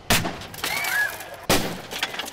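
Two sharp cracks about a second and a half apart, with a rattling noise between them, from rescue crews breaking into a wrecked pickup truck during a vehicle extrication.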